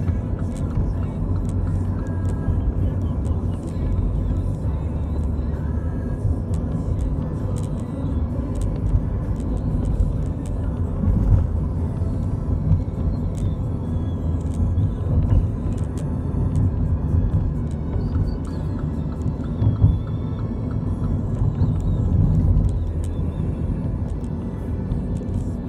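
Road and engine noise heard inside a moving car's cabin: a steady low rumble of tyres on the road, rising and falling slightly as the car drives on.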